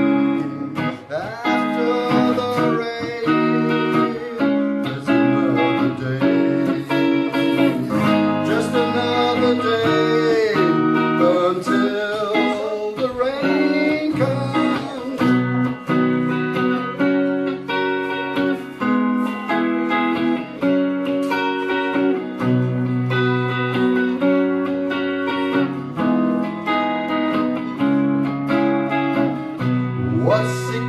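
Guitar solo in an instrumental break of a song: a lead line with bent, gliding notes over steady bass and chords.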